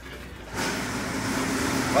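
Mini moto (pocket bike) engine that comes in about half a second in and runs steadily, growing a little louder.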